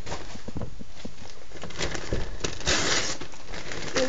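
Newspaper being handled and crumpled, a rustling with small crackles that is loudest in a short burst about two and a half seconds in.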